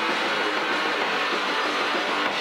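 Live punk rock band playing a dense, steady wall of distorted electric guitar over drums.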